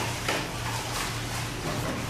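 Swimming-pool filter pumps running: a steady electric-motor hum with a broad hiss of water and machinery.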